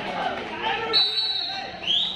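Referee's whistle blown in two short blasts, the first about a second in and the second rising in pitch near the end, marking the end of a raid after the raider is tackled. Voices and shouts from players and onlookers run through the first half.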